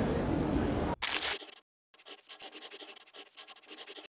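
Busy street background noise that cuts off about a second in. After a short silence it is followed by a quieter dry scratching made of rapid clicks that runs to the end.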